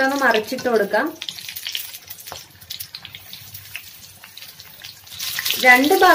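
Batter-coated green chillies deep-frying in hot oil: a light crackling sizzle that swells into a louder, brighter hiss near the end.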